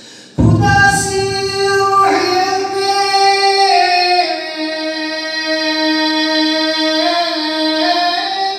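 A man singing a manqabat (devotional Shia poem) unaccompanied into a microphone, in a high voice. He comes in suddenly and loudly about half a second in, then holds long drawn-out notes that step up and down in pitch.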